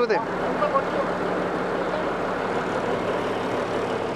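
Large truck's diesel engine idling steadily, a constant low running sound.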